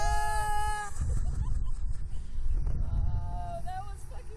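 A woman screaming on a Slingshot reverse-bungee ride: one long held scream at the start, then a shorter rising cry near the end. Wind rumbles on the microphone throughout.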